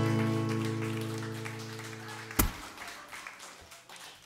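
Final strummed chord of an acoustic guitar ringing out and fading away. It is cut off by a single sharp click about two and a half seconds in, followed by faint room noise.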